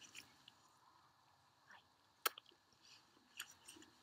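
Near silence with a few faint ticks and one sharp click a little over two seconds in.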